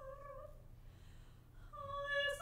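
Soprano singing a classical art song: a held note with vibrato tapers off about half a second in, then after a short, quieter gap a new held note begins near the end.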